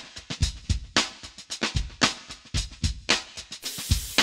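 Drum kit playing a busy groove on its own, about four to five strikes a second mixing snare, bass drum and cymbal hits, with no other instruments.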